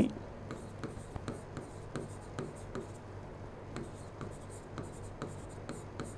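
A pen writing on a board: a run of faint, short scratches and taps as words are written out.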